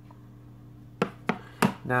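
A few sharp knocks of a smartphone being set down on a hard tabletop, about a second in, over a steady low electrical hum.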